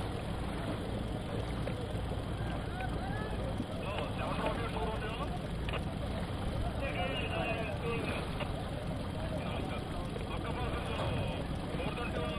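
Motor of an inflatable rescue boat running steadily as it crosses open water, with wind on the microphone. Voices break in with short bursts of talk a few times.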